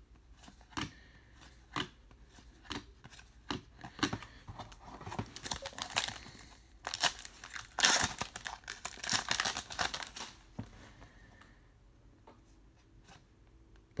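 Trading card pack wrapper torn open and crinkled. The tearing is loudest in a dense stretch about seven to ten seconds in. Before it come scattered light clicks of cards being handled.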